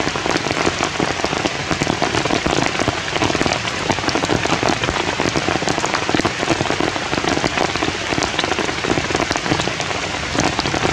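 Steady heavy rain falling, a constant hiss dotted with many separate drop ticks.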